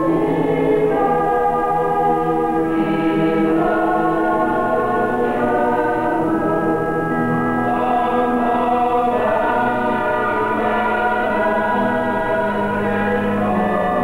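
Mixed choir of children and adults singing in chords, with long held notes that shift every second or two.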